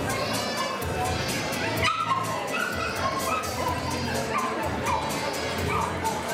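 Background music with a steady beat. Over it, miniature bull terriers give short barks and yips several times, starting about two seconds in.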